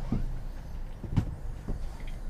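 A few light clicks and knocks from a small plastic trolling-motor remote being handled, about three of them, over a low steady hum.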